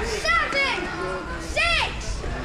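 Children letting out short, high-pitched squeals that rise and fall in pitch, three or so in quick succession, over a crowd's chatter.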